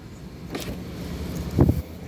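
Car engine idling with a low rumble, with a brief low thump about one and a half seconds in.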